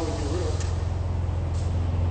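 Steady low rumble like an idling vehicle or machinery, with a brief muffled voice at the start and a couple of faint clicks.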